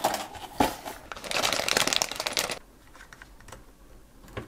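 LEGO plastic pieces handled and pressed together: a couple of sharp clicks, then about a second and a half of dense clicking and rubbing, then only faint ticks.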